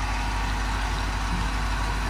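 A steady low rumble under an even hiss, without breaks or changes.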